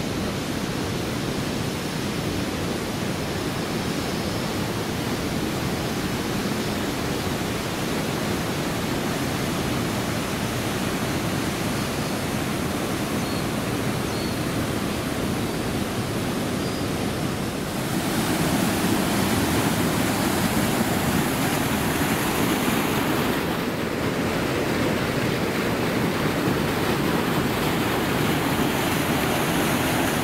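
Steady rush of river water running over rock cascades. About two-thirds of the way in it suddenly becomes louder and hissier: the nearer, heavier rush of a waterfall plunging into a pool.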